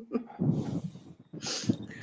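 People laughing over a video call, in two breathy, snorting bursts of laughter.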